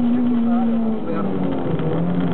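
Toyota MR2 MK2 (SW20) engine heard from inside the cabin at high revs, holding a steady note, then falling in pitch in steps from about a second in.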